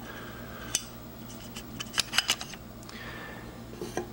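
Small metal parts of a Reichert phoroptor's lens-wheel assembly clicking and tapping as they are handled and fitted by hand. The sharp clicks are scattered, with a quick cluster about two seconds in, over a faint steady hum.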